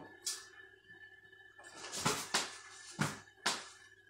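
Faint taps and rustling of a person moving while dropping a toilet paper roll and catching it between the legs: a short click just after the start, then three soft knocks in the second half.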